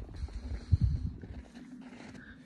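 Low rumbling bumps on the phone's microphone as the phone is moved about, loudest a little under a second in, then settling down.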